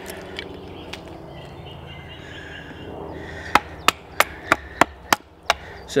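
Wooden baton knocking on the spine of a knife, battoning it into sweet chestnut to round off the edges of a mallet. There are a couple of light taps at first, then a run of about eight sharp knocks, roughly three a second, in the second half.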